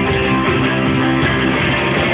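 Rock band playing live at full volume, an instrumental stretch led by guitar with bass underneath and held chords ringing steadily.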